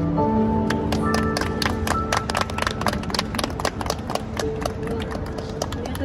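Scattered hand claps from a small audience, starting about a second in, over the last held notes of the song's accompaniment as it fades out.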